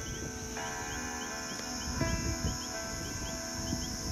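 Crickets chirping in a continuous high drone. Over it is soft background music of held chords, which come in about half a second in and change about two seconds in.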